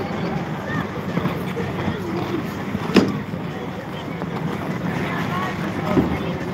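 Crowded outdoor ice rink: skaters' voices chattering over a steady rushing noise, with one sharp knock about three seconds in.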